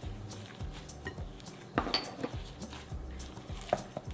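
A hand squeezing and kneading moist masa dough in a glass mixing bowl: soft squelching with scattered small knocks against the glass, and one brighter clink about two seconds in.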